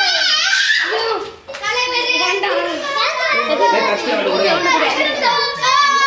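A group of boys shouting and cheering excitedly, many voices overlapping, with a brief lull about a second and a half in and long drawn-out calls near the end.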